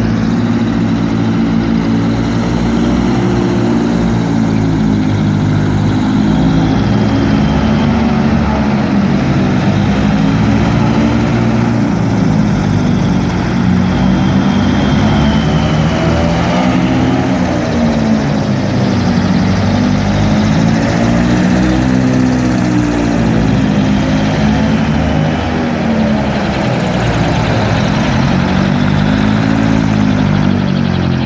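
Passenger hovercraft's engines and twin ducted propellers running loudly as it approaches and comes up onto the bank. The drone holds steady while its pitch rises and falls every few seconds.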